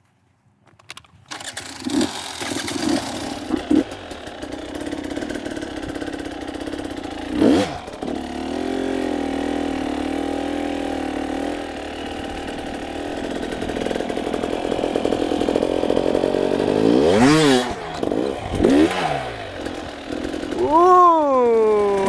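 Dirt bike engine running, mostly at a steady idle, with several sharp throttle blips that rise and fall in pitch as the bike is hopped up onto a log.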